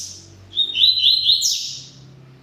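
Double-collared seedeater (coleiro) singing: a sharp note right at the start, then a loud phrase of four quick, slightly rising notes ending in a buzzy note.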